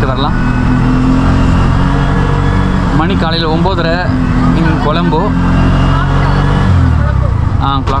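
Tuk-tuk (auto-rickshaw) engine running steadily as it drives along, heard from inside the cabin. Its note changes about two-thirds of the way through.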